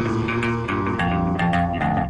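Cumbia music playing loudly over a club sound system, with steady held notes and a beat.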